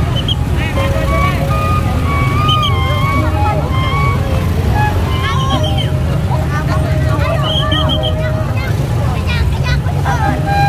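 Music played through a large street loudspeaker sound system, with a heavy steady bass under a held melody that steps from note to note. Crowd voices and shouts are mixed in over it.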